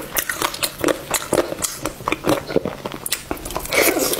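Close-miked eating sounds: biting and chewing a sauce-glazed chicken drumstick, in quick irregular clicks and smacks, with a louder bite near the end.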